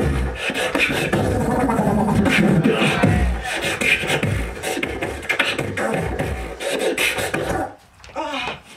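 Beatboxing into a handheld microphone through a PA: deep kick-drum booms under snare and hi-hat sounds and sung, sliding vocal tones. The routine stops abruptly just before the end.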